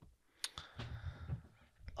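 Quiet room pause with two short faint clicks, one about half a second in and one near the end, and a faint soft noise between them.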